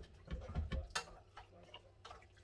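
Wooden spatula knocking and scraping against a nonstick frying pan while stirring vegetables, a few irregular clicks and taps, the sharpest about a second in.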